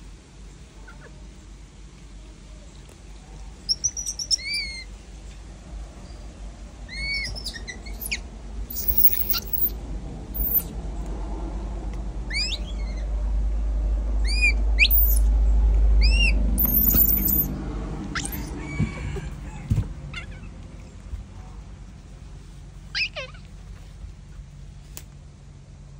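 Short, high-pitched chirping animal calls come in scattered groups of a few at a time, over a low rumble that swells in the middle and is the loudest sound.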